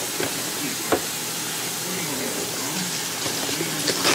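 Steady hiss with one sharp tap about a second in, from hands handling a cardboard snack box.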